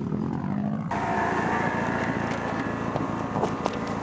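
Rally car engine idling steadily. About a second in, the sound switches abruptly to another rally car's engine idling, with a few faint clicks near the end.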